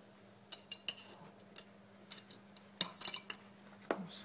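Scattered light clicks and taps of a screw and cordless screwdriver against a plastic camera back box as the next screw is set in place, with a small cluster of clicks near the end. A faint steady hum runs underneath.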